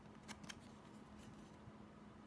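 Faint handling of a glossy trading card being turned over by hand: a few soft clicks in the first half-second and another about a second in, otherwise near silence.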